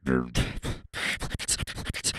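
Beatboxing: a rhythm of percussive mouth sounds with sharp hissing hi-hat-like strokes and a short pitched vocal sound at the start, in the manner of a vocal scratch.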